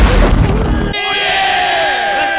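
A loud, heavy burst, then several people yelling together in one long shout whose pitch slowly falls.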